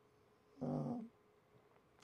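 A man's short hesitation sound, "uh", about half a second in; otherwise near silence.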